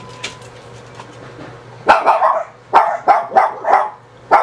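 Dogs barking in a quick run of about five loud barks, starting about two seconds in, set off by spotting a cat.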